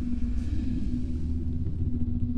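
Steady low rumble with a constant hum, the sound effect of an open swirling time portal.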